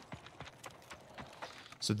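Faint, irregular steps on hard ground, heard through the war film's soundtrack.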